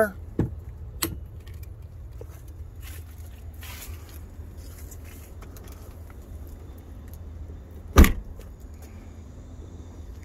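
Light clicks and knocks from the SUV's cargo floor panel being handled, then, about eight seconds in, a single heavy thump as the 2018 Dodge Journey's rear liftgate is slammed shut. A low, steady rumble runs underneath.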